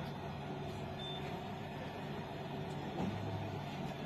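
Steady running noise inside a moving tram carriage, with a low hum underneath.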